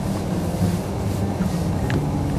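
Steady low hum of a boat motor running, with light wind noise on the microphone.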